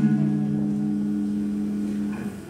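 Live blues band's electric guitars and bass letting a chord ring out: a few low notes held steady, the lowest dropping out about three-quarters of the way through.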